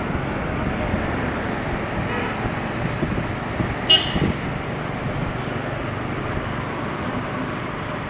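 Steady road and traffic noise heard while riding a motorbike through city traffic, with wind on the microphone. A short, sharp horn beep comes about four seconds in.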